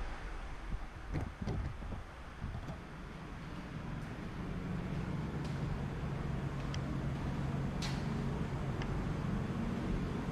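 Spray booth's air system running with a steady low hum that swells a little after about four seconds, with a few faint clicks.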